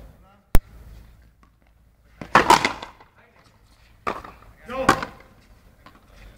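A single sharp, loud crack about half a second in: a frontenis ball being struck in play. Two short bursts of voices follow, the first around two and a half seconds in and the second near five seconds.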